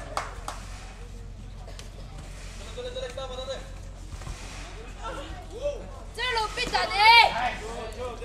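High-pitched shouting voices during a taekwondo sparring bout, low and scattered at first, then a run of loud shouts about six to seven and a half seconds in. A few sharp claps or strikes sound in the first half-second.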